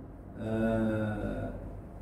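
A man's drawn-out hesitation sound, a single low "eh" held at one steady pitch for about a second, in a pause in his talk.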